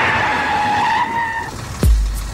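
Radio-jingle sound effect: a noisy rush with a held high squealing tone that cuts off about one and a half seconds in, followed near the end by a deep falling bass hit that starts a beat-driven music bed.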